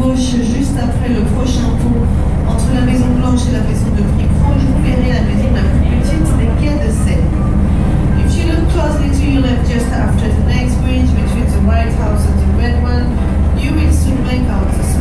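Steady low drone of a sightseeing boat's engine, with people's voices talking over it.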